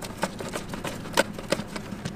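A Phillips screwdriver turning a screw out of a plastic battery cover, with a few scattered light clicks and ticks as the bit works the screw.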